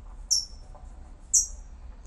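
A small bird chirping twice, about a second apart, each chirp short, high and falling in pitch, over a faint steady low hum.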